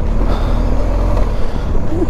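Motorcycle engine running as the bike rides along, under a heavy, steady low rumble.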